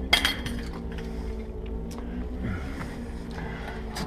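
Scattered light clinks and clicks of hard objects being knocked or handled, several in quick succession in the first second and another near the middle, over a steady low hum.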